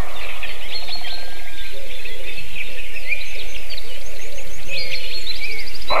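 Wild birds calling and singing: a dense mix of short chirps, whistles and trills, with a quick run of five high notes about four and a half seconds in and a rapid trill just before the end.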